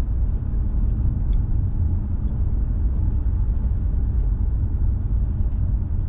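Steady low rumble of road and engine noise inside the cabin of a car driving slowly, with a few faint ticks.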